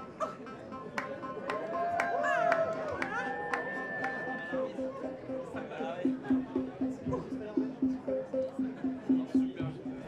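Modular synthesizer playing electronic tones: sliding, bending pitches and held notes, then from about six seconds in a low note pulsing evenly about three times a second.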